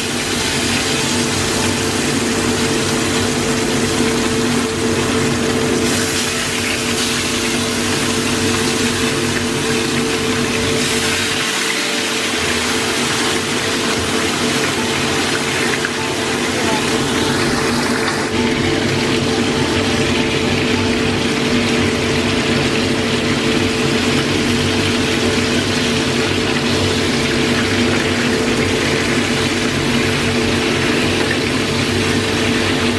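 Whole fish frying in hot oil in a frying pan: dense, steady sizzling and crackling throughout, with a steady low hum underneath.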